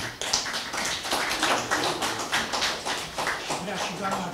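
Audience applauding, a dense patter of many hands clapping at an even level.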